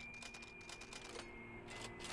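A faint, quick run of clicks through the first second or so and a few more near the end, like keys being tapped, over a faint steady high whine.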